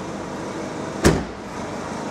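Citroën C4 Picasso's tailgate shut once about halfway through: a single sharp thud with a short ringing tail, over a steady background hum.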